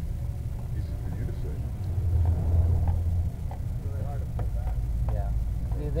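A low engine rumble, like a motor vehicle running close by, that changes pitch partway through, with faint voices talking behind it.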